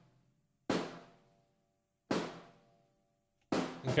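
Room-mic snare drum sample played soloed without processing: three hits about a second and a half apart, each with a sharp attack and a ringing, roomy decay.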